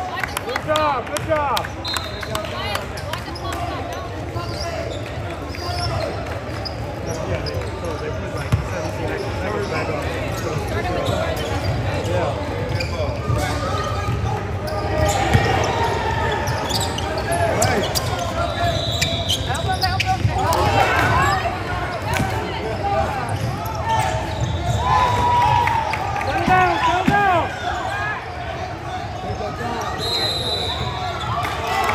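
Live basketball play in a large gym: a basketball bouncing on the hardwood floor as players dribble, short sneaker squeaks on the court, and indistinct voices of players and spectators.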